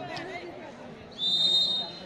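Volleyball referee's whistle: one steady, high-pitched blast of nearly a second, starting about halfway through, signalling the serve. A faint crowd murmur runs underneath.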